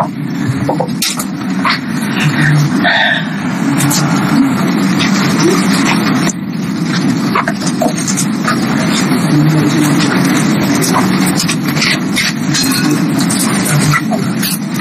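Indistinct murmur of many voices, students talking among themselves in a classroom, with a few sharp clicks.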